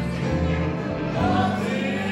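Live gospel worship song: a woman sings into a microphone, joined by other voices over held instrumental chords.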